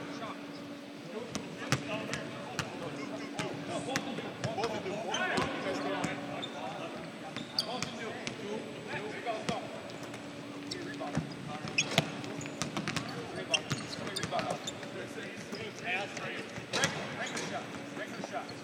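Several basketballs bouncing on a hardwood court during a team shoot-around, a steady run of irregular, overlapping thuds from balls being dribbled and shot at once.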